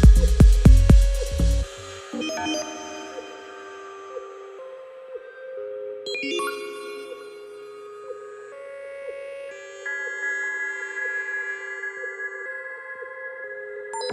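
Minimal deep tech electronic track: the kick drum and bass stop about two seconds in, leaving a quieter breakdown of held synth notes and chords.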